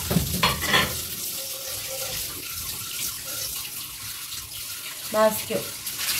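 A steady hiss, with a brief spoken word about five seconds in.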